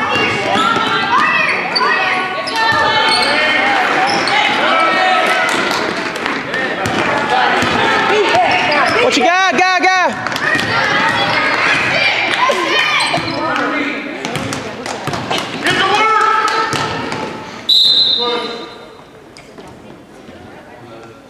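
Indoor youth basketball game in a gym hall: a ball dribbling on the hardwood floor and sharp knocks, under loud overlapping shouts from players and spectators. A short high whistle blast comes near the end, stopping play, and the noise then dies down.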